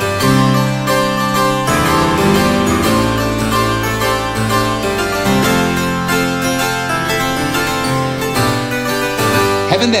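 Sampled French harpsichord played from a keyboard, with both the eight-foot and four-foot stops sounding together at A440: a continuous run of plucked chords and notes. The four-foot stop on top adds a little extra sparkle.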